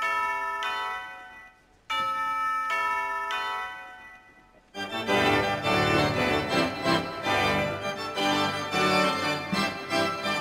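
Two held chords, each fading away over a couple of seconds, then at about five seconds a pipe organ comes in, playing full with a deep bass.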